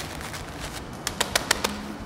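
A few sharp clicks and crackles, about five in the second half, from plastic-wrapped bags of dried beans being handled and pressed into place on a stacked wall.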